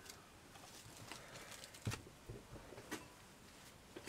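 Faint handling noise as small craft supplies are put away by hand: a few soft separate clicks and taps over quiet room tone, the clearest a little under two seconds in and another about three seconds in.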